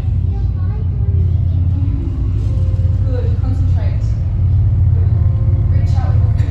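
Deep, steady rumble of a theatrical sound effect played over the show's speakers, swelling slightly toward the end, as the holocron effect begins. Faint wavering voice-like sounds ride over it.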